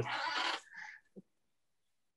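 A brief breathy vocal sound over a meeting call, fading out within about half a second, then near silence.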